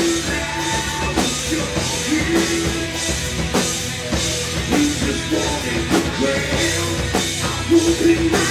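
Live punk rock band playing at full volume: distorted electric guitars, bass and a drum kit keeping a steady beat, with a singer's voice over the top.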